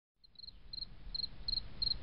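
An insect chirping in short, even trills, two or three a second, over a faint low rumble.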